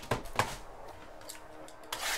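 A few light clicks and taps of trading cards and cardboard card boxes being handled and set down on a table, the sharpest near the start.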